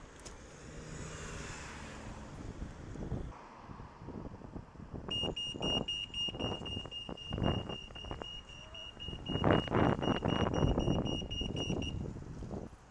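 Signal-controlled road crossing's audible signal: a high-pitched beeping that starts about five seconds in and keeps going, heard over gusts of wind noise on the microphone and the bike rolling over the road.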